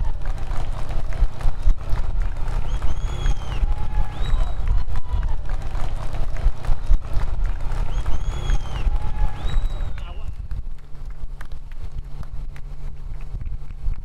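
Heavy wind and vehicle rumble on the microphone of a camera tracking a cyclist along the road, with faint voices over it. The rumble eases about ten seconds in.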